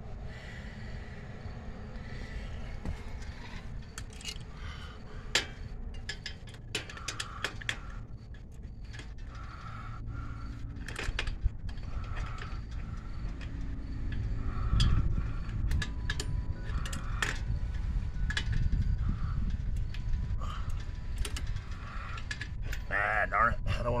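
Hand tools working loose the rear axle nut of an adult tricycle: scattered metal clicks and knocks of a wrench on the nut and frame, over a steady low rumble.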